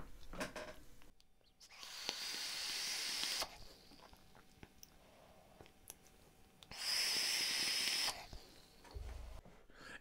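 Vaping on a rebuildable dripping atomiser: two long breathy hisses of air and vapour, each about one and a half to two seconds, the second louder, as the vapour is drawn in and blown out. A soft low thump near the end.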